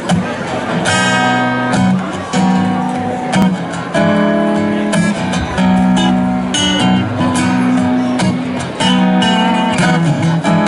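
Live acoustic band playing an instrumental intro: acoustic guitars strumming and picking chords over low upright bass notes.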